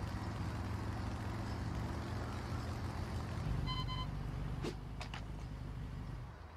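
Motorcycle engine sound effect from an animation soundtrack, running steadily and getting a little deeper about halfway through. A short high beep follows soon after, then two clicks.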